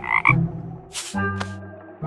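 Cartoon sound effect of a frog croaking once, short and right at the start, over light background music with a couple of brief percussive hits.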